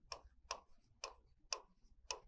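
Stylus tip tapping faintly against the glass of an interactive display as letters are handwritten: about four sharp, uneven clicks, roughly two a second.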